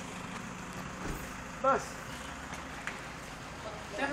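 Street ambience: a steady background hum with one short voice call about a second and a half in.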